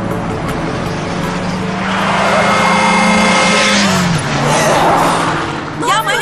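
Car sounds of a near-collision: an engine running, then a loud tire screech of a couple of seconds as a car brakes hard and only just avoids hitting a taxi. Women cry out right at the end.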